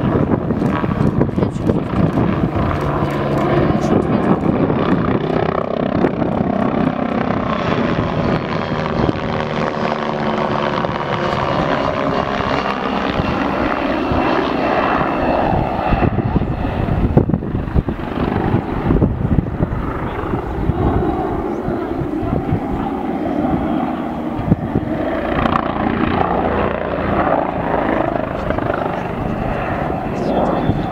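MBB Bo 105 twin-turbine helicopter flying aerobatic manoeuvres overhead: a loud, steady rotor and turbine sound whose pitch sweeps up and back down about a third of the way in as it climbs and turns.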